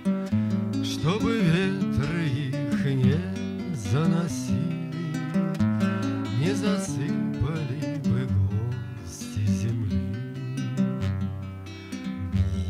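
A man singing a song to his own nylon-string acoustic guitar. The guitar plays throughout, while the voice drops out for short stretches between lines.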